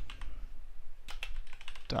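Typing on a computer keyboard: irregular keystroke clicks, coming in short quick runs.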